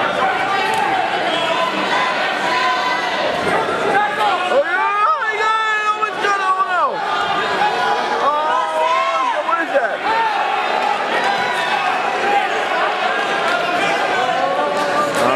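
Crowd of spectators talking and shouting to the wrestlers, with single voices yelling louder about five and eight seconds in.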